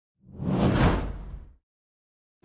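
A single intro-template whoosh sound effect with a deep rumble underneath, swelling up and fading away over about a second and a half.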